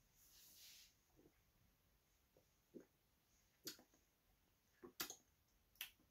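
A sip of dark ale drawn from a glass, a brief soft hiss, followed by several faint lip and tongue clicks spread over the next few seconds as the beer is tasted.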